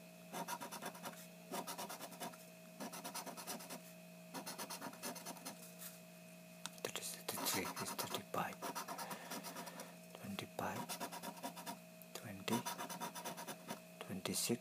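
A coin scratching the coating off a paper lottery scratch-off ticket, in short runs of quick back-and-forth strokes with brief pauses between them.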